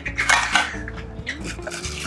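Crushed ice crunching and rattling in a metal julep cup while a bar spoon works into it, with a few small metallic clinks.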